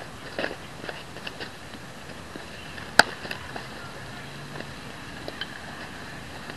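A baseball impact: one sharp crack about halfway through, with a few fainter knocks around it in the first second and a half.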